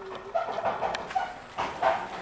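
A dog barking in a quick series of short barks.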